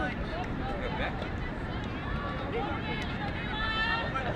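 Faint, scattered voices of players and spectators calling out, with higher voices near the end, over a steady low rumble.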